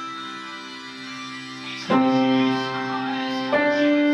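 Upright piano played by hand: a held chord fading, then a loud chord struck about two seconds in and another about a second and a half later, each left ringing.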